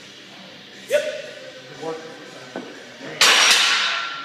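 Two short vocal grunts from a lifter at the end of a high-rep squat set, then a loaded steel barbell racked into a power rack's hooks with a double metallic clang near the end, the steel ringing on afterwards.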